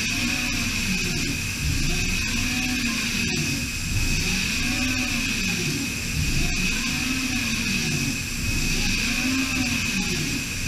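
DMG Mori DMU 65 monoBlock five-axis machining centre milling aluminium under flood coolant: a steady high-pitched cutting whine over coolant spray hiss, with a lower whine that rises and falls in pitch about every second and a half as the cut sweeps back and forth.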